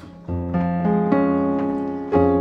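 Piano playing a C-sharp major chord over an F bass (C♯/F, the notes F, G♯ and C♯), struck about a quarter second in, with more notes added about a second in, then left ringing.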